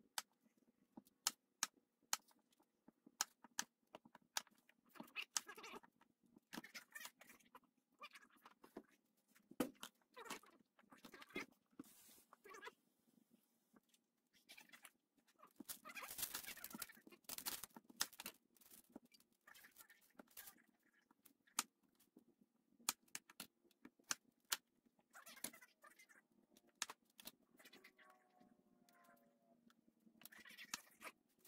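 A chef's knife cutting onions on a wooden cutting board: irregular sharp knocks of the blade meeting the board, with some rustling of onion skin. A brief pitched sound comes near the end.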